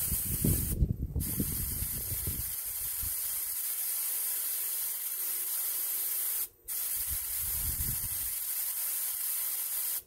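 Iwata airbrush spraying paint onto a shirt, a steady airy hiss. The spray stops briefly twice, about a second in and again about six and a half seconds in, as the trigger is let off.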